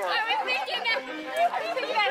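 People talking in the open air, voices of adults and children walking off the field.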